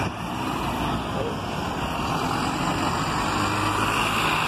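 Mercedes-Benz diesel city bus with a Caio body running as it drives up and draws alongside, a steady low engine note over road noise that grows slightly louder as it nears.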